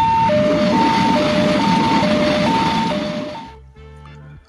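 Railway level-crossing warning alarm sounding two alternating tones, high then low, about one pair a second, over a hiss of street traffic noise. It fades out about three and a half seconds in.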